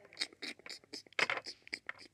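A string of light, irregular plastic taps and clicks, about five or six a second, from small plastic toy figures and playset pieces being handled and moved on a toy playset.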